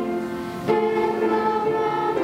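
Children's choir singing in unison with long held notes. There is a short dip, then a new phrase comes in sharply about two-thirds of a second in.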